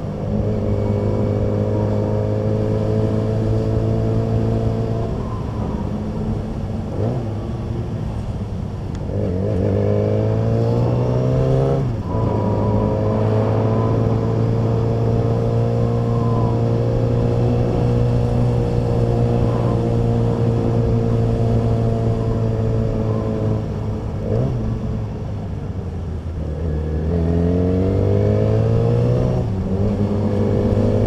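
Yamaha motorcycle engine heard from the rider's seat while riding. It runs at a steady cruise, revs up about ten seconds in and changes gear at about twelve seconds, then holds a steady note. Near the end it eases off and accelerates again.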